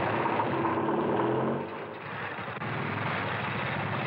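Motor vehicle engines running steadily: first a car engine, then a motorcycle engine. The sound dips about one and a half seconds in and comes back with a sudden step near the middle.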